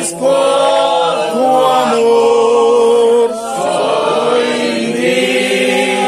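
A small group of mostly male voices singing a hymn together without accompaniment, in long held notes with short breaks between phrases near the start and about halfway through.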